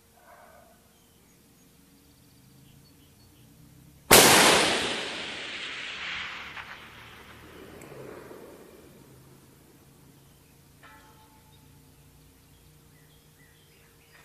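A single rifle shot from a short 18-inch AR-10 in .308: one sharp, loud crack about four seconds in, followed by a long echo that fades over about four to five seconds.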